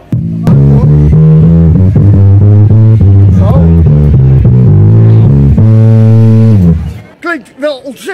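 Electric bass guitar played loud: a quick riff of plucked low notes, ending on one held note that stops about seven seconds in.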